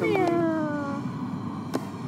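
A person's long drawn-out exclamation, falling in pitch over about a second, over steady background noise, with a few sharp clicks later.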